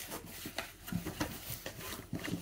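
Paper and cardboard packaging rustling and rubbing as it is handled, with scattered light clicks and taps.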